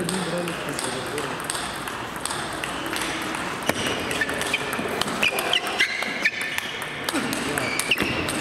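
Celluloid-type table tennis ball clicking off bats and table in a rally, a series of short sharp hits that grows busier in the second half. A few short high squeaks of sports shoes on the court floor come about five to six seconds in.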